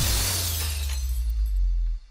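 Electronic dance track: a bright crash-like hit rings out and fades over a sustained deep bass note, and both cut off suddenly at the end, a break in the build-up.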